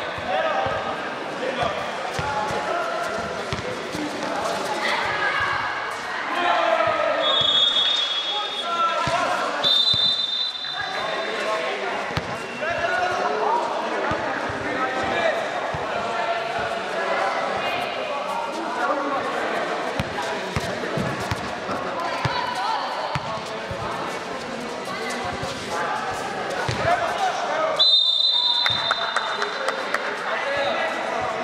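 A basketball being dribbled and bouncing on an indoor sport court, with players' voices calling out throughout. Brief high squeals come about eight and ten seconds in and again near the end.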